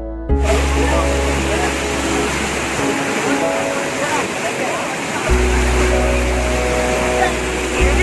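A waterfall rushing and splashing over rocks and over a person standing in the cascade. It cuts in suddenly about a third of a second in, under background music with sustained chords and bass.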